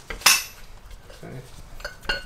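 One sharp metal clank about a quarter second in, followed by fainter metallic clinks, as the steel ball joint press comes off the rusty axle shaft yoke and the parts are handled on a concrete floor.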